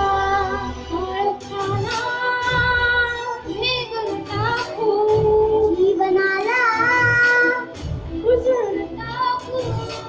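A large choir singing a Marathi song together over instrumental accompaniment with a steady low beat.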